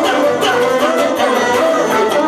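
Live band dance music with a singer over a steady, even beat.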